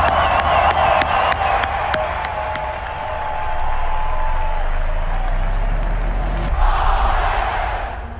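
Crowd cheering and whooping over music with a steady beat. The beat stops about three seconds in, and the cheering swells again near the end before fading out.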